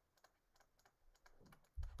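Faint, scattered light clicks and taps of a pen stylus on a drawing tablet as an equation is handwritten, close to silence.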